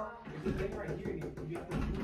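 Quiet background music with low, indistinct voices.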